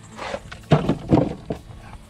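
A rustle and then several sharp knocks and scrapes against a hard plastic cooler as a caught fish is put into it.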